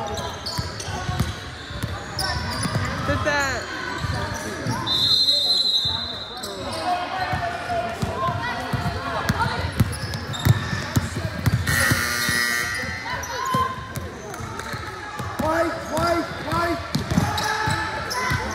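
Basketball being dribbled on a hardwood gym floor during play, with players' and spectators' voices calling out, echoing in a large gym.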